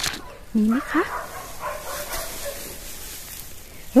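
Dry straw rustling and crackling as it is pushed aside, with a brief crackle at the very start.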